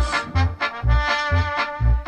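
Band music in an instrumental stretch: short, clipped horn notes over a bass beat about twice a second.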